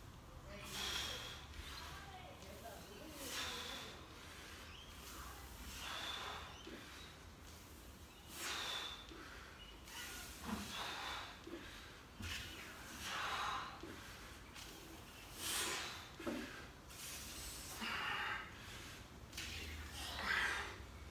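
A man breathing hard and forcefully through his mouth while squatting a loaded barbell: a sharp, hissing breath every two to three seconds as he works through the reps.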